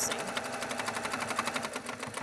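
Baby Lock Accomplished 2 sewing machine running fast and steady during free-motion quilting. The needle stitches through a quilt sandwich in a quick, even run of strokes.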